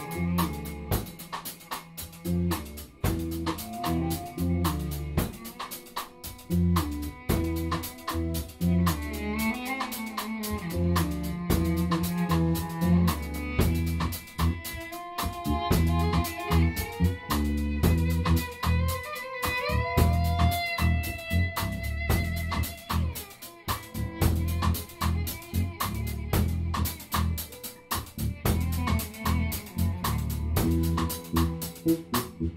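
Electric cello, electric guitar, bass guitar and drum kit jamming together over a steady drum beat. The bowed cello holds long notes and slides between pitches through the middle.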